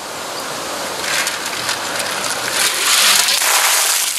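Steady outdoor hiss that swells in the second half, with a few faint clicks as a glass vessel full of ice water is picked up and lifted overhead.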